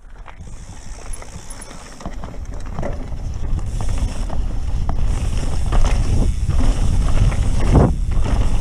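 Santa Cruz Megatower mountain bike riding down dirt singletrack: tyres rolling over the trail with rattling and clicking from the bike, and wind rumbling on the camera's microphone, getting steadily louder as speed builds.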